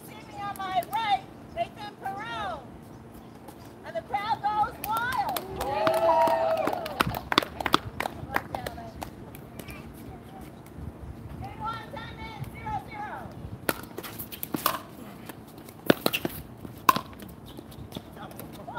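People talking on and around the court in several short stretches, one voice held in a long call about six seconds in. Near the end come a few sharp, separate clicks.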